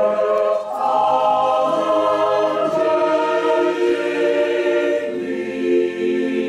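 Mixed choir of men and women singing unaccompanied, holding sustained chords that move to new notes every second or two.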